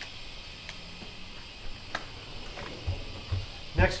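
Faint steady background hiss with a couple of light clicks and a few soft, low knocks in the last second, as of things being handled on a kitchen counter.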